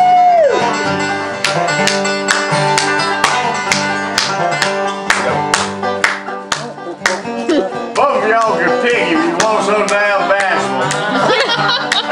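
Banjo and acoustic guitar playing together in a bluegrass-style tune, with many quick plucked notes. A voice comes in over the playing in the last few seconds.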